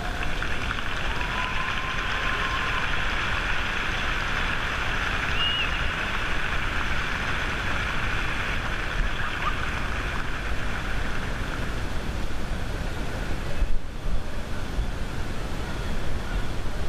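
Stadium spectators applauding, a steady patter of clapping that thins out about ten seconds in.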